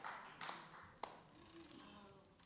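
A few faint, scattered claps as applause dies away, then near silence in the hall.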